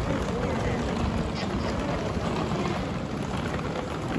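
Ambient bustle of a covered shopping arcade: indistinct chatter of passers-by over a steady wash of crowd and street noise.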